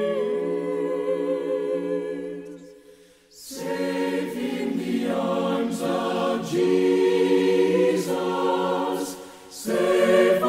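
A choir singing long, held notes. The phrase fades out about three seconds in, a new phrase starts half a second later, and there is another short dip near the end.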